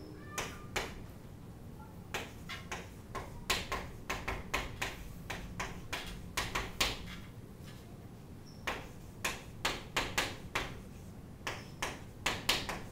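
Chalk writing on a chalkboard: a run of sharp taps and short scratches in clusters with brief pauses between, as a line of lettering is written.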